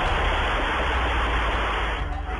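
Steady, even hiss of static with a low hum beneath it, the sound track of security-camera footage. It thins out at the very end.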